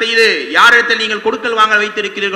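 A man speaking in a continuous lecture, his voice drawn out in places with long held pitches.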